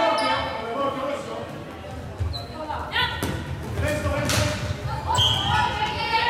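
Floorball players calling out to each other in an echoing sports hall, mixed with thuds and knocks from the game on the hall floor.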